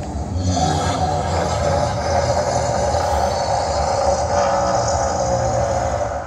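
Giant fire-breathing dragon sculpture shooting flames: a loud, steady rushing roar of its flame jets that holds without a break.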